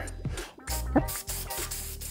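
Aerosol spray-paint can hissing as paint is sprayed over a dish-soap pattern on a tumbler, starting about half a second in, under background music.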